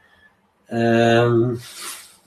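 A man's voice holding a drawn-out hesitation vowel for under a second, then a short breathy exhale, a suppressed laugh.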